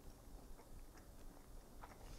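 Near silence: room tone with a few faint clicks of a mouth chewing a piece of cheese.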